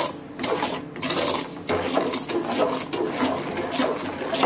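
Metal spoon beating a wet sugar mixture against the sides of an aluminium bowl: quick, repeated scraping strokes.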